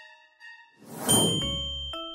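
Animated-graphic sound effects over a music bed: a soft chime, then a whoosh that swells into a bright, high ding just after a second in. Bass notes of the music come back near the end.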